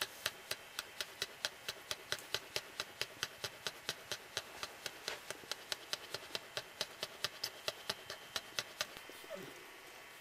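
A working cocker spaniel bitch panting fast and evenly after whelping, about four sharp breaths a second, with a third puppy still expected. The panting stops about nine seconds in.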